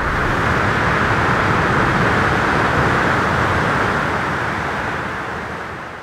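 Steady roar of surf breaking on a reef, fading out over the last couple of seconds.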